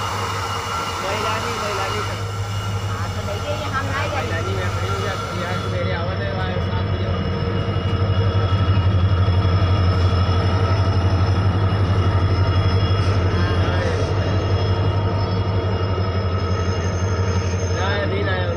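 Indian Railways diesel locomotive running past with a steady low engine drone that grows louder as it draws alongside, loudest in the middle, then eases a little. Faint voices of people on the platform come through now and then.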